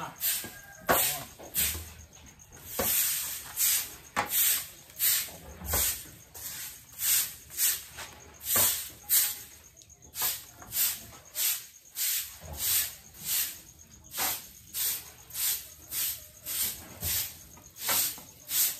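Soft grass broom sweeping a concrete floor in quick, regular swishing strokes, about two a second.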